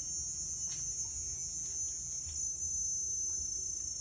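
Steady, high-pitched chirring of insects such as crickets, over a low rumble.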